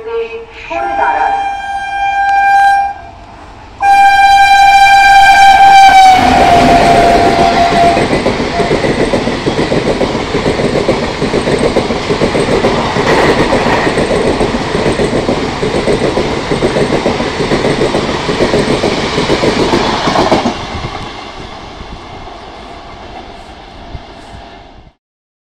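WAP-4 electric locomotive sounding its horn in three blasts, the last and longest dropping in pitch as the engine passes at speed. The loud rush and clatter of its express coaches follows for about fourteen seconds, then fades as the train runs away.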